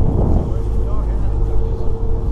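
Outdoor crowd chatter over a strong low rumble of wind buffeting the microphone, with a thin steady hum throughout.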